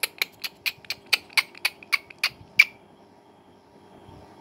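A quick run of about a dozen short, sharp clicks, roughly four a second, that stops about two and a half seconds in.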